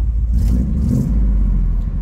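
A GM one-ton dually pickup's engine idling with a loud exhaust rumble, which swells briefly from about half a second in.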